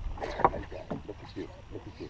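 Scattered knocks and handling noise over a low rumble, the loudest knock about half a second in, with brief muffled voice fragments, as fishing gear is handled while a fish is on the line.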